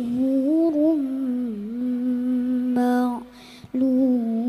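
A child reciting the Qur'an in the melodic tilawah style, holding long notes that waver and bend, with a short breath pause near the end.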